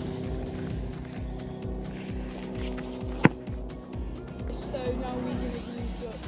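Background music with a steady beat, and a single sharp thud a little over three seconds in: a football struck in a shot at goal.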